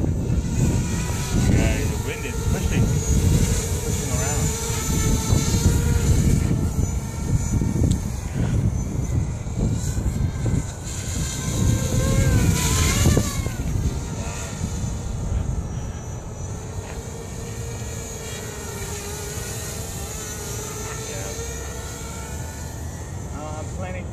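Hobby quadcopter's electric motors and propellers whining in flight, the pitch wavering up and down as the throttle changes, loudest around the middle as it flies low near the microphone. Wind rumbles on the microphone, heavier in the first half.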